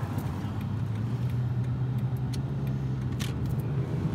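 Inside a moving car's cabin: a steady low engine and road hum, with a few light ticks or rattles around the middle.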